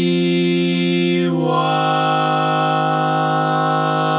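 Barbershop tag sung a cappella by multitracked male voices with the baritone part left out, so the missing part can be sung along. The voices hold a sustained chord, then move together to a new chord about a second and a half in and hold it.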